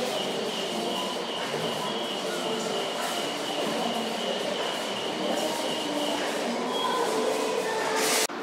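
Steady background noise of a large store, with a thin high whine through the first five seconds or so.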